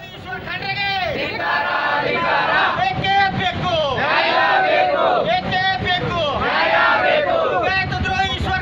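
A crowd of protesters shouting slogans together, loud rising-and-falling calls repeated about once a second.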